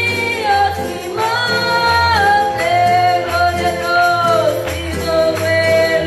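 A woman singing a Spanish worship chorus through a microphone and PA, holding long notes over live keyboard and guitar accompaniment with a bass line that changes about once a second.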